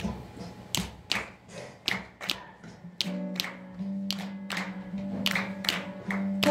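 Sharp percussive taps, about two to three a second, in a quiet break of a live acoustic song, with a low held note coming in about halfway.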